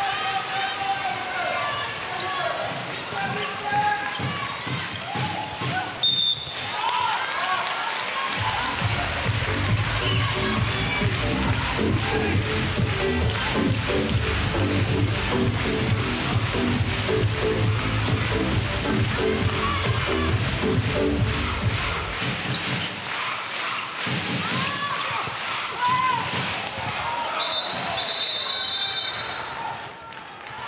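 Handball arena sound: crowd voices with the ball bouncing and thudding on the court. A stretch of music with a heavy beat plays from about a third of the way in to about three-quarters. A short high whistle comes about six seconds in, and a longer whistle blast comes near the end.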